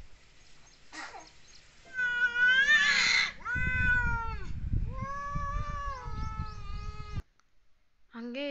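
Domestic tabby cats caterwauling in a fight standoff. A short call comes about a second in, then long, drawn-out yowls that rise, fall and waver from about two seconds on, cutting off abruptly near the end.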